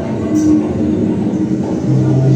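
Dense, rumbling electronic noise music played from laptops, with a steady held tone entering about half a second in and a low hum joining near the end.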